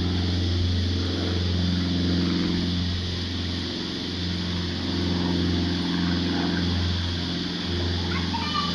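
A motor engine running steadily nearby with a low, even hum. It eases slightly about halfway through and then picks up again.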